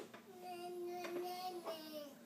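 A baby girl's voice holding one long, steady 'aah' for about a second and a half, dropping in pitch at the end.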